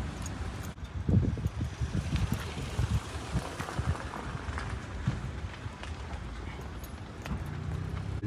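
A person's footsteps on asphalt, irregular and thinning out in the second half, over a steady low background rumble.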